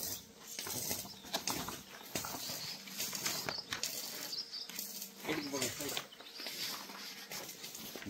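Polythene greenhouse sheet rustling as it is handled, with scattered small clicks. A voice is heard briefly about five seconds in.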